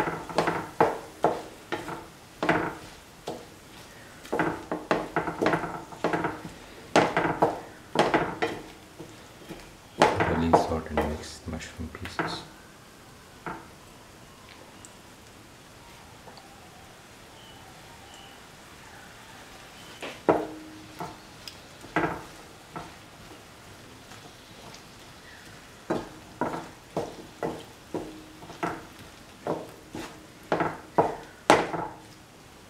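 A spatula clicking and scraping against a pan as chopped vegetables are stirred in a sauté, in quick runs of knocks with a quieter stretch in the middle, over a faint sizzle. A louder low rumble comes about ten seconds in.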